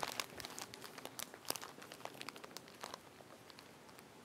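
Faint, irregular crinkling clicks that thin out and stop about three seconds in.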